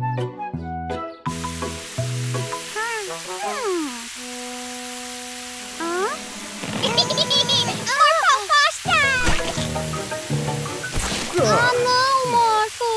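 Cartoon soundtrack: a music phrase that ends about two and a half seconds in, then a cartoon character's gliding, wordless vocal noises, and from about six seconds in the hiss of water spraying from a garden hose with more vocal noises over it.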